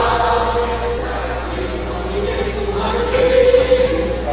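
A national anthem played with a choir singing over music, in long held notes that swell louder toward the end.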